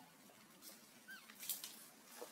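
Faint, short high chirping calls, with a brief crackle about one and a half seconds in.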